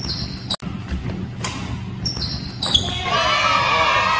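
Badminton play on a wooden indoor court: sneakers squeaking on the floor and a racket striking the shuttlecock, in a large echoing hall. About three seconds in, louder music with several tones comes in.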